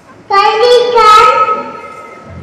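A young girl singing: one long, held phrase comes in about a third of a second in and fades away before the end.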